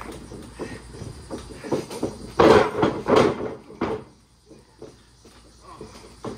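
Wrestlers' bodies bumping and thudding on a backyard wrestling ring's mat, with a cluster of loud slams about halfway through.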